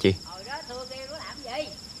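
Night insects keeping up a steady, high-pitched trill, with a faint voice underneath.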